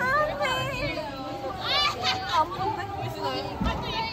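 Several young women's voices talking over each other excitedly, with high-pitched squeals and cries among the chatter.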